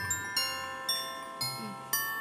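Background music: a light melody of struck, bell-like mallet notes, about two notes a second, each note ringing on.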